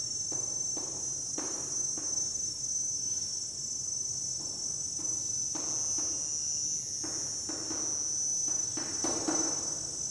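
Chalk scratching and tapping on a chalkboard in short, irregular strokes as a line of script is written. Under it runs a steady, high-pitched insect drone.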